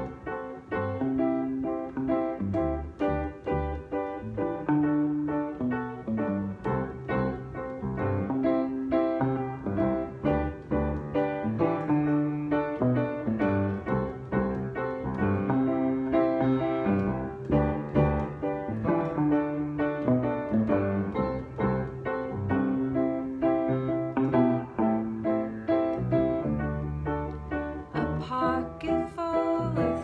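Piano and electric guitar playing together in an instrumental song intro: a steady run of struck notes over a low moving bass line.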